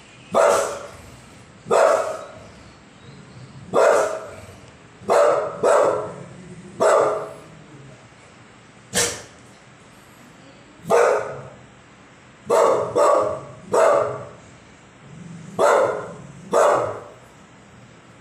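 Pit bull barking: about a dozen short barks, some single and some in quick pairs, with pauses of one to two seconds between them.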